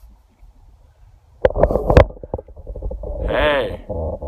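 Handling noise on a phone's microphone: rubbing and knocks that start suddenly about one and a half seconds in, over a low rumble. Near the end comes a short vocal sound that rises and falls in pitch.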